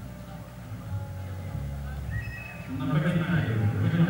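Voices of a standing crowd mixed with music, louder from about three seconds in, over a steady low rumble.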